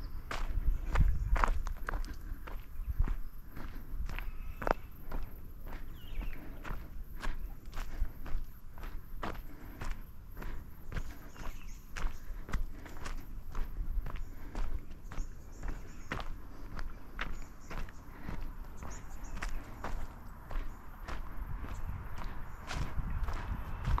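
A walker's footsteps on a dirt track, steady and even at about two steps a second.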